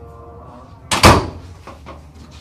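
A door being shut hard: a loud bang about a second in, with a lighter click just before it and two softer knocks after.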